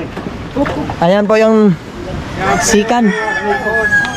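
Men's voices shouting long, drawn-out calls while moving the boat by hand, with several voices overlapping in the second half.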